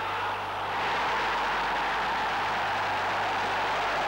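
Football stadium crowd cheering a goal, a steady roar that swells about a second in and holds.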